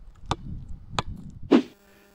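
Low rumbling background noise with two sharp clicks about two-thirds of a second apart, then a brief vocal sound shortly before the end.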